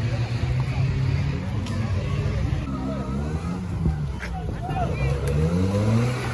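Off-road 4x4's engine working hard through deep mud, its revs swinging up and down and climbing again near the end.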